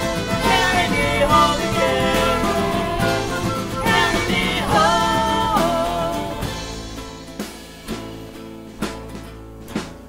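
Folk-punk band playing an instrumental passage with a sliding melody line over guitar and drums. About six and a half seconds in it drops back to quieter, sparse plucked notes.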